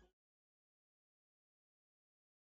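Near silence: the track is silent, with the music ending right at the start.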